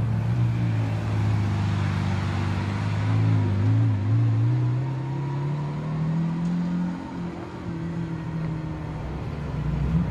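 Lamborghini Aventador SVJ's naturally aspirated 6.5-litre V12 running at low revs as the car rolls slowly past. The note wavers with small throttle changes, rises gently about halfway through, then holds steady and gets a little quieter near the end as the car moves away.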